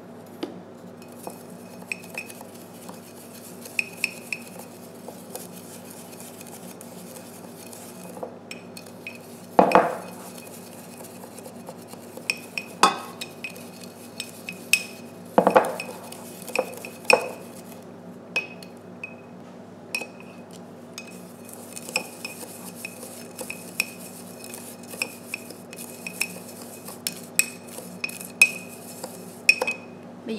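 Chopsticks clinking and scraping against the inside of a glass jar while sugar is mixed into shredded daikon and carrot for pickles. Many light ticks leave the glass briefly ringing, with two louder knocks about ten and fifteen seconds in, over a faint steady hum.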